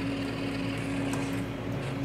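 Steady electrical hum of a laboratory ellipsometer running, with a few faint clicks.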